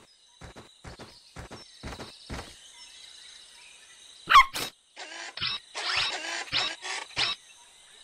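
Cartoon sound effects for a small dog: a quick run of light taps like small pattering steps, then one short sharp yip about four seconds in, followed by a few short noisy bursts.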